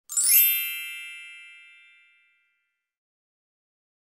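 A chime sound effect: a quick rising shimmer into a bright ringing ding that fades away over about two seconds.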